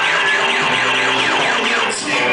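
Live band playing, with an electronic instrument making rapid repeated falling pitch sweeps, about four a second, like an alarm, over a steady low drone.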